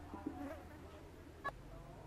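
Faint buzzing of a flying insect, with two short clicks, one early and one about halfway through.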